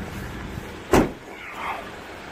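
Hyundai Grand Starex van's rear tailgate swung shut with a single loud slam about a second in.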